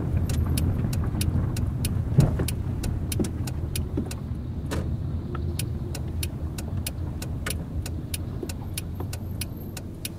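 Inside a car's cabin: low engine and tyre rumble, with the turn-signal indicator ticking about three clicks a second. A single louder knock comes about two seconds in, like a wheel hitting a bump.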